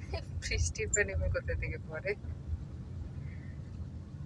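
Car driving, heard inside the cabin as a steady low rumble of engine and road. Faint voices talk over it for the first two seconds or so.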